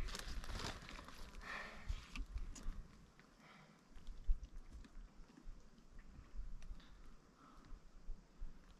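Faint crinkles and clicks of a plastic water bottle being handled and drunk from, over a low, fluttering rumble of wind on the microphone.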